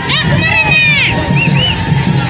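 Large outdoor crowd shouting and cheering, with high-pitched shouts rising and falling in the first second over a dense, loud din.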